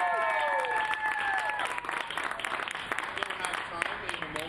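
Audience applauding, with long held whoops that fade out about a second and a half in; the clapping carries on, thinning toward the end.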